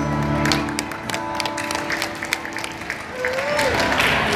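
A live band's final chord fades out about half a second in, followed by scattered audience clapping.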